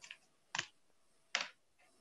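Three faint, short clicks of computer keys being pressed, the second about half a second after the first and the third nearly a second later, as an open video-call microphone is being muted.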